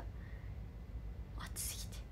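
A pause in a woman's talk with a low steady hum under it; about one and a half seconds in, a short breathy hiss as she takes a quick breath.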